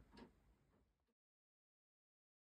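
Near silence: a faint trace fades out within the first second, then the track drops to complete digital silence.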